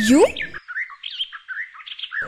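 Birds chirping: a busy run of short, quick, high notes, after a single spoken word at the start.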